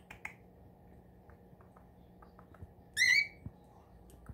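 Cockatiel giving one short, wavering, whistled call about three seconds in. A few faint clicks come before it.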